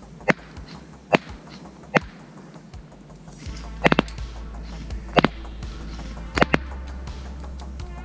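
Semi-automatic airsoft shooting with a Specna Arms SA-B12 electric rifle firing 0.32 g BBs at about 1.05 joules. About eight sharp cracks come singly, roughly a second apart, with some in quick pairs.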